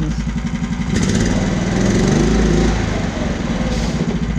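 Wiltec small petrol engine on the RC chassis revving up about a second in, then dropping back to idle near the three-second mark. The drop comes as the radio transmitter is switched off and the model's failsafe sets the emergency brake.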